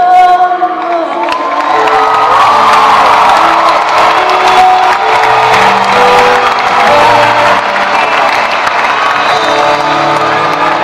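A large live audience breaks out suddenly into loud cheering, with high shouts and whoops, as a song ends, over the band's sustained closing chords.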